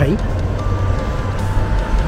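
An electronic signal sounds two steady tones, a higher one for just under a second, then a slightly lower one, over a low rumble of street traffic.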